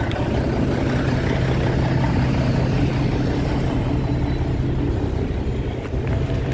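Cummins N14 diesel engine of a Freightliner Classic truck running steadily, an even low drone with no change in pitch.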